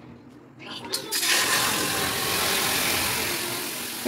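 Milk poured into a hot kadai, hitting the metal with a sudden loud sizzle about a second in that carries on steadily and eases slightly toward the end.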